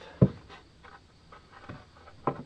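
A wooden knock about a quarter second in as a curved pine template is set against the laminated forefoot timbers, followed by a few faint taps and rubbing of wood being handled.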